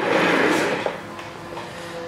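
A short scraping rustle of a stamped-steel timing cover being picked up and handled in gloved hands, loudest for about the first second and then dying away to faint handling noise.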